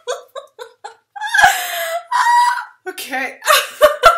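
A young woman's wordless vocal reaction: short bursts of laughter and two longer, loud, high-pitched voice sounds in the middle, a genuine outburst of feeling.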